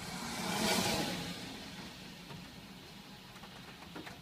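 A car passing on a wet road, its tyre hiss swelling to a peak about a second in and then fading, over a low steady hum.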